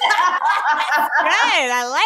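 People laughing and chuckling in conversation, with one long drawn-out laughing voice near the end.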